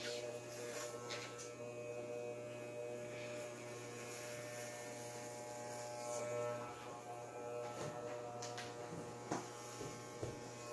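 Electric hair clippers running with a steady buzz while cutting short hair.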